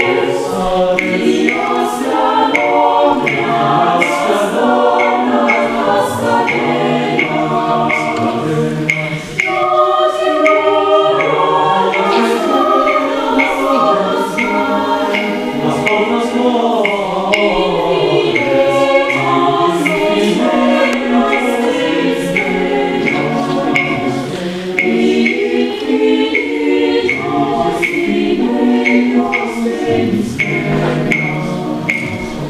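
Mixed choir singing a Cuban bolero in several voice parts, over a light click that keeps the beat at about two a second.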